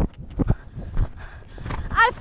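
Hoofbeats of a galloping horse on turf, low thuds about every half second with a short pause near the middle.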